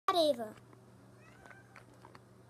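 A domestic cat meowing once, a short call that falls in pitch, loudest right at the start.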